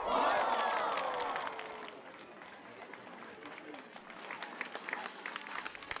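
Crowd of spectators cheering, a sudden burst of many voices together that falls in pitch and dies away over about two seconds, followed by scattered clapping.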